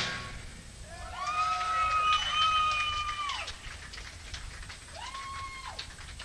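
Loud live punk music stops abruptly, then long high whoops from the crowd, each rising, held and falling away: two overlapping about a second in and another near the end, with scattered small clicks.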